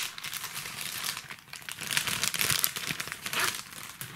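Clear plastic bag crinkling and rustling as a nylon NATO watch strap is pulled out of it, loudest about halfway through.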